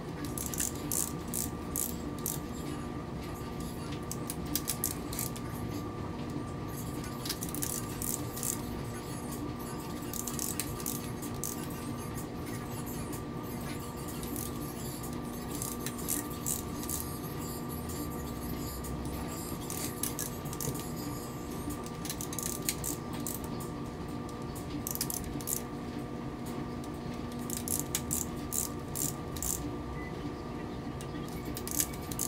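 Ratcheting torque wrench clicking in short bursts of rapid ticks, repeated every few seconds, as the camshaft cap bolts are run down and torqued. A steady hum runs underneath.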